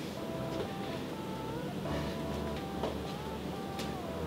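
Soft background music: a simple electronic melody of short held notes stepping up and down, with a few faint clicks.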